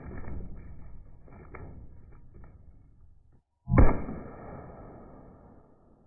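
Gunshots slowed down with the slow-motion picture, heard as deep, drawn-out booms: one at the start that fades over about three seconds, then a louder one nearly four seconds in that dies away over about two seconds.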